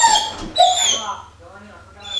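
A dog whining in short, high-pitched cries, two in the first second and then fainter ones, while held back on a leash at the door.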